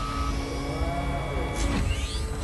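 Science-fiction film sound effect of a joystick column rising out of a starship console: held electronic tones over a steady low rumble, with a rising whine near the end.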